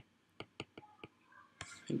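Stylus tapping on a tablet's glass screen during handwriting: about five short, sharp ticks in the first second, then a soft breath as the lecturer starts to speak near the end.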